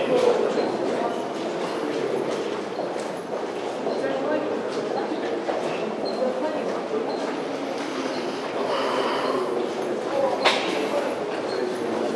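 Footsteps and indistinct chatter of a group of people walking through a long concrete tunnel, with a single sharp knock about ten and a half seconds in.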